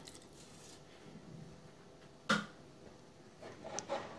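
Mostly quiet kitchen, with a faint pour of vinegar into a glass mixing bowl at the start. A single sharp clink of dishware comes a little past halfway, and a few light clicks follow near the end.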